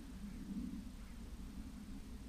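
Faint, steady low background hum with no distinct sound event.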